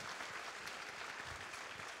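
Audience applauding steadily, fairly faint.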